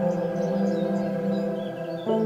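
Meditation music of sustained bell tones: one chord rings on and slowly fades, with no new strike until just after the end. Small birds chirp lightly over it.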